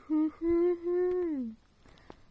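A single unaccompanied voice sings a short note, then a long held note that slides down in pitch and stops about a second and a half in.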